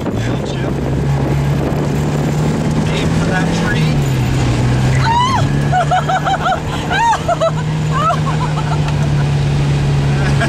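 Porsche 924S four-cylinder engine heard from inside the cabin, pulling hard on track. Its pitch drops briefly about four seconds in as the driver lifts or shifts, then holds steady again. High-pitched squealing sounds come and go over the engine in the second half.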